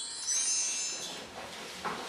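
Shimmering high chimes, a twinkling sparkle effect that rings out loudest in the first second and then fades. A short knock near the end.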